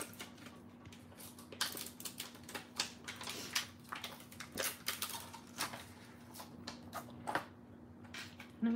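Irregular small clicks, taps and crinkles of a clear plastic stamp sheet being handled, then a clear acrylic stamp set down on cardstock in a stamp positioning tool. A steady low hum runs underneath.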